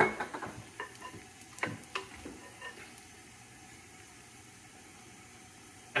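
Oil and pancake batter sizzling faintly in hot frying pans, with a few light clicks and knocks of utensils and a bottle in the first two or three seconds.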